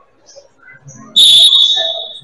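Referee's whistle blown in one long, loud blast about a second in, stopping play.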